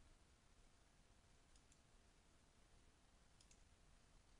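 Near silence with faint room hiss, broken by two faint double clicks, one about a second and a half in and one near the end.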